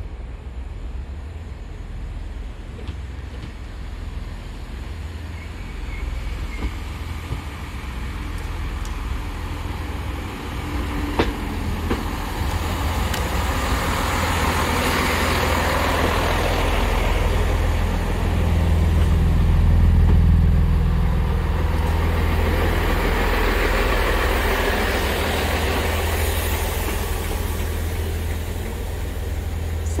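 Diesel multiple unit train approaching and running into the platform, its engine and wheels on the rails growing steadily louder, loudest about two-thirds of the way through as it passes close by.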